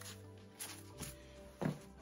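Soft steady background music, with a few faint taps and rustles of bagged comic books being moved by hand.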